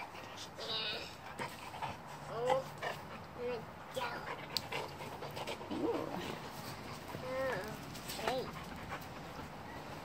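A dog whining, about five short high cries that rise and fall in pitch, spread out over several seconds.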